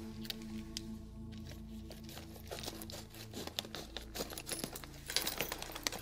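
Clear plastic parts bag being opened and handled, crinkling and crackling, with the small parts inside clicking, over soft background music. The crinkling grows busier near the end.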